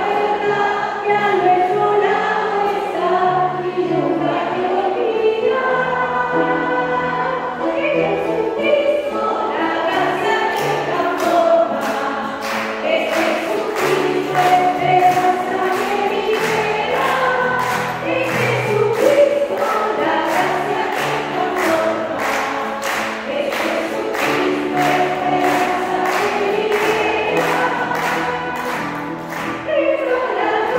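A congregation of women singing a hymn together, led by a woman's voice on a microphone, with piano accompaniment. Clapping on the beat joins about ten seconds in.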